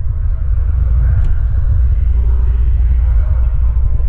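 A steady low rumble, with one faint click about a second in.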